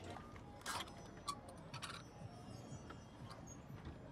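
Faint background ambience with a few light clicks and taps, clustered in the first two seconds.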